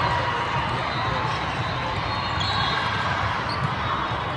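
The steady, echoing din of a busy indoor volleyball hall, with a volleyball being played during a rally and one sharp hit near the end.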